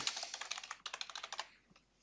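Computer keyboard typing: a quick run of keystrokes lasting about a second and a half, then it stops.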